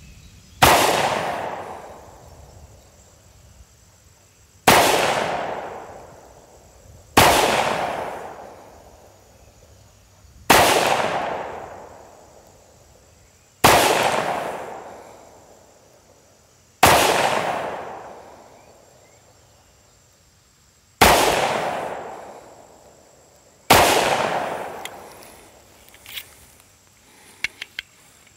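Les Baer Custom Carry Commanche 1911 pistol in 10mm firing eight slow-fire shots, about three seconds apart, each shot loud and echoing away over a couple of seconds.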